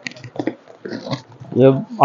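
A cardboard carton being opened by hand: a few short scrapes and rustles from the flaps and from the plastic-wrapped suit packets inside. A man says a single word near the end.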